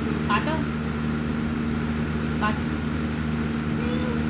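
A steady low mechanical hum runs throughout, with a person saying a short word twice, about half a second in and again about two and a half seconds in.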